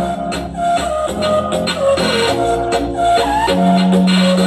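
A song playing through an Infinity (JBL) Fuze 100 portable Bluetooth speaker set to its Deep Bass mode, loud, with a strong low bass under the melody.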